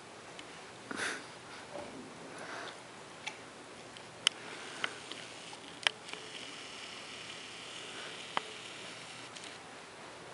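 A dog sniffing at a red rubber Kong toy, with a breathy snuffle about a second in. Several single sharp clicks follow in the middle stretch.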